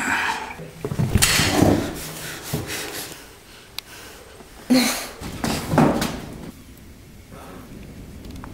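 Short bursts of heavy, breathy exhalation with some voice in them, from people straining while arm wrestling. The loudest bursts come in the first two seconds, and two more come about five and six seconds in.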